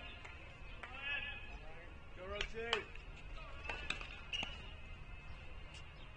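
Tennis-court ambience: distant voices calling, a handful of sharp pops from tennis balls being struck or bounced, over a low steady hum.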